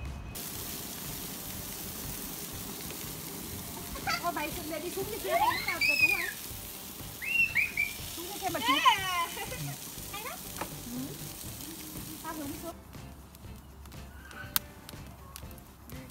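A steady rushing noise with a high-pitched voice calling in rising and falling tones through the middle. Near the end, after the rushing stops, come a few sharp crackles.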